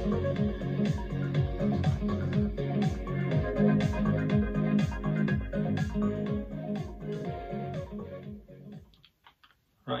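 An upbeat soundtrack tune played through a Samson Expedition Express portable PA speaker, with its bass turned up, a steady bass beat and a melody over it. The music fades out about nine seconds in.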